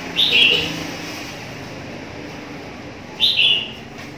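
A bird chirping twice, about three seconds apart: each chirp is short and high and drops in pitch. A faint low hum runs underneath.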